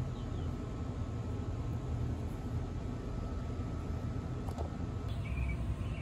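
Steady low outdoor rumble with no distinct event, apart from a faint click about four and a half seconds in.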